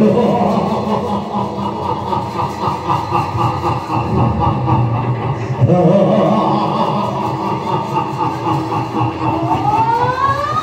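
Amplified live stage audio of an Assamese bhaona performance in a large hall: drawn-out pitched vocal sounds over a steady low drone, with a rising glide at the start and again about six seconds in.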